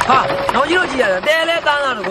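A person's voice speaking or calling out in short phrases that swing up and down in pitch.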